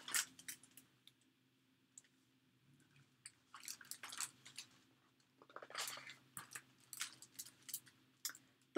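Faint, scattered rustles and clicks of a large hardcover picture book being handled and a page turned: a few just after the start, then a longer run of them from about three and a half seconds in.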